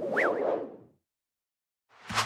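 A whoosh sound effect for an animated title, swelling and fading out within about a second, with a brief up-and-down chirp near its start.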